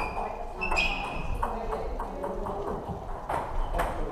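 Table tennis ball clicking off bats and table in a rally, irregular sharp ticks with two louder hits near the end, and more ball clicks from other tables in a large hall.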